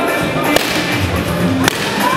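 Two sharp smacks of boxing-gloved punches landing on hand-held pads, about a second apart, over background music.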